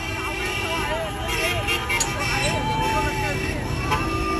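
Road traffic and the running of a moving vehicle, heard with a voice whose pitch rises and falls in short curves throughout.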